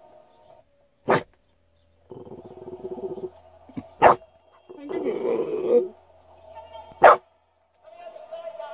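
A Jack Russell–pug cross dog giving three short, sharp barks about three seconds apart: demand barking for a biscuit.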